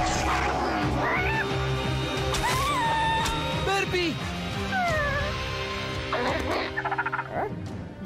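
Cartoon slug creature squeaking and crying in short rising and falling calls over dramatic background music.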